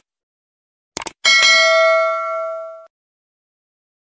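Subscribe-animation sound effects: a quick double click about a second in, then at once a bright notification-bell ding that rings for about a second and a half and cuts off abruptly.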